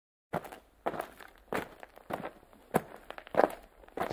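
Six slow, evenly spaced footsteps, one about every half second or so.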